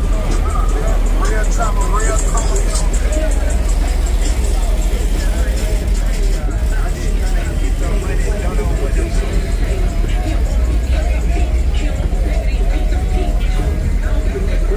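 Custom cars on oversized wheels driving slowly past one after another, a heavy steady low rumble under voices and music.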